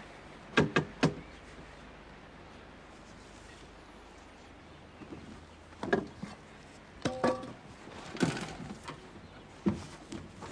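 Metal wheelbarrow knocking and clanking as it is handled and tipped: three sharp knocks in quick succession about half a second in, then a run of clanks and scraping from about six seconds on, one with a brief metallic ring.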